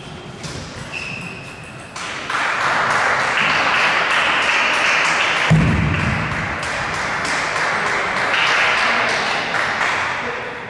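Sharp clicks of table tennis balls being hit in the hall, under a loud steady rushing noise that comes in about two seconds in and eases off near the end, with one low thud about halfway through.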